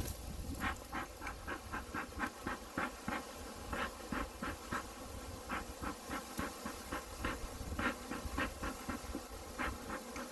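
Bee smoker's bellows being pumped, sending out short hissing puffs of air and smoke in quick, slightly irregular succession, about three a second, starting about half a second in.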